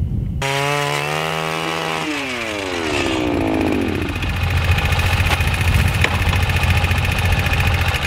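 Gas-powered ice auger running. Its engine note drops as the bit bites into the lake ice, then it runs on steadily under load while drilling a hole.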